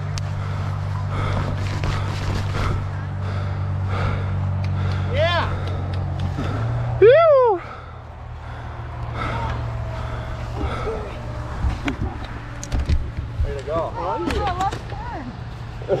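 A person's loud whoop about seven seconds in, rising and falling in pitch, with a shorter rising call just before it, among people talking, over a steady low hum.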